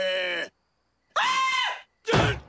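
A cartoon voice: a strained, pitched yell that breaks off half a second in, then after a short pause a brief, very high-pitched scream.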